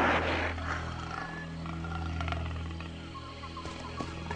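A cartoon big cat caught in a net, roaring or snarling; the sound fades within about the first half-second. After it comes only a low, steady background drone.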